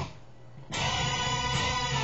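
Electric guitar played through a BOSS HR-2 Harmonist pedal set to add a lower and a higher octave, so each note sounds in three octaves at once. The playing breaks off briefly at the start and picks up again under a second in.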